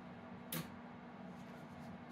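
Faint steady hum from the forced-air-cooled GI-7B valve amplifier and its blower, with one brief click about half a second in.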